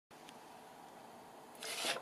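Faint steady hiss of room tone after an edit, then near the end a soft rubbing as a hand slides paper craft tags across a sheet of paper.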